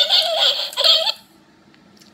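Children giggling, a loud choppy burst of about a second that breaks off suddenly.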